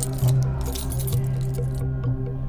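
Metal handcuffs being fastened, their chain and cuffs clinking and rattling, stopping shortly before the end. Sustained low background music plays underneath.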